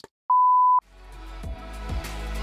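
A single steady electronic beep lasting about half a second, then outro music fading in and growing louder, with a sustained bass note.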